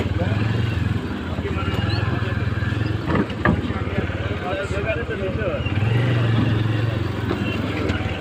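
Motorcycle engine running steadily at low revs while moving slowly in stop-and-go traffic. People's voices are in the background, and there are a couple of sharp knocks about three seconds in.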